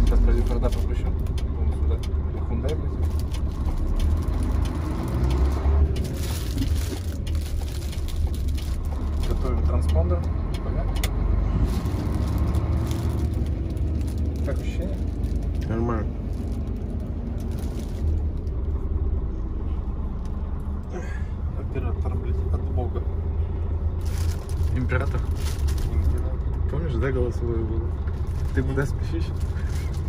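Low, steady engine and road rumble inside the cab of a Mercedes-Benz Axor truck on the move, with indistinct voices over it at times.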